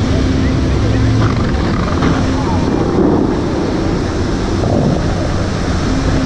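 Bellagio fountain water jets rushing and spraying down onto the lake in a steady loud wash, with voices of onlookers mixed in.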